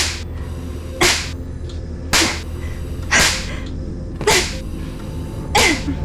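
Six hard open-hand slaps to a face, about one a second, each preceded by a quick swish of the swinging arm.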